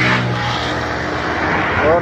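An engine running steadily at an even speed, with no revving.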